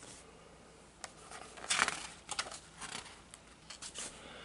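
A page of a large hardcover picture book being turned: paper rustling and flapping in a string of short bursts, loudest a little under two seconds in.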